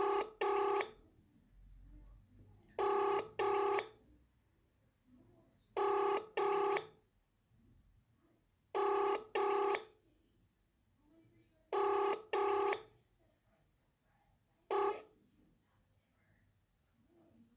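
Telephone ringback tone of a call ringing out, in the double-ring cadence, ring-ring then a pause, about every three seconds. Five rings, the last cut off after its first half; the call goes unanswered.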